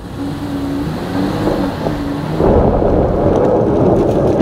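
Jeep Gladiator's 3.6-litre V6 pulling steadily at low revs on a hill climb, with traction control off and the clutch being slipped. From about two and a half seconds in, a louder rough rush of noise joins it as the tires spin and slip on the dirt.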